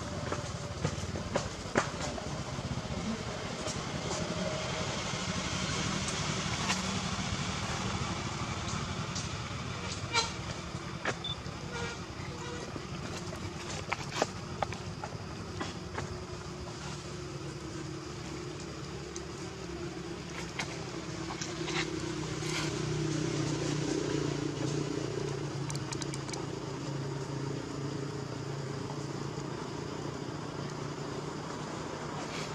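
Steady outdoor background noise with a low drone that grows louder for a few seconds about three-quarters of the way through, and a few scattered sharp clicks.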